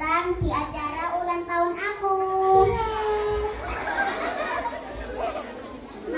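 A young girl's voice over a microphone and PA, with a few drawn-out notes, then a murmur of mixed voices from the audience in the second half.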